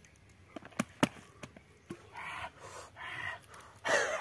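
Hand-stuffing marinated chicken pieces into a green bamboo tube: several sharp clicks and taps in the first two seconds, then two longer breathy rasps.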